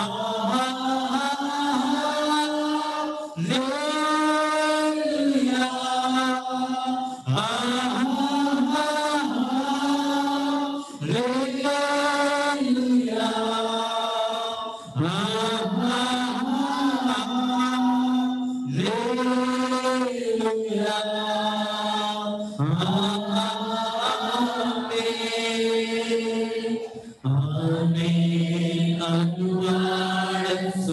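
Worship singers at microphones singing a slow, chant-like devotional song in long repeated phrases of about four seconds, each sliding up into a held note. Near the end a lower phrase begins.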